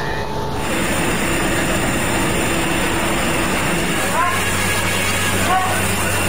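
Scene sound of a warehouse fire at night: a dense, steady rushing noise, with a low engine hum joining about four seconds in and a few short raised voices calling out.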